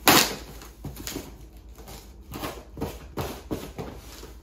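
A cardboard shipping box being torn open by hand, its packing tape and flaps ripping. There is a loud rip at the very start, then a string of shorter tearing and scraping strokes.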